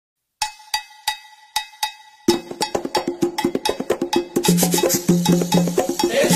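Opening of a samba-enredo recording. A high bell-like percussion instrument strikes a steady beat about three times a second. About two seconds in, a full samba percussion section joins, and near the end a bass line comes in under it.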